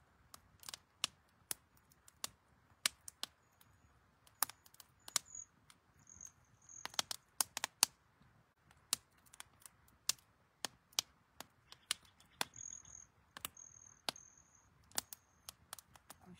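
Wood fire crackling in a ceremonial fire pit: irregular sharp pops and snaps, a few each second.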